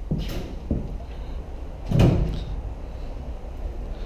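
A door knocking once, loudest about two seconds in, with a couple of lighter knocks and clicks before it.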